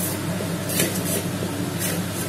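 Wooden spatula stirring and scraping crumbled shark puttu around an aluminium pan on the stove, with two scraping strokes about a second apart over a steady low hum.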